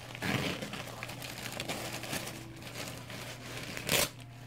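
Plastic packaging crinkling and rustling as something is pulled out of a plastic mailer bag, ending with a sharper, louder rustle.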